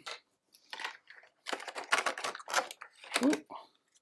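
Cut-down plastic insert trays and plastic miniatures knocking, clicking and scraping as they are handled and fitted into a cardboard game box: a run of short, irregular clicks and rustles.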